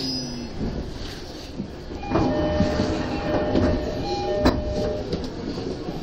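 JR Chūō-Sōbu Line commuter train coming to rest at a station platform. Its low motor tone dies away about half a second in. With the train standing, short chime-like tones sound from about two seconds in, and there is a sharp clunk about four and a half seconds in.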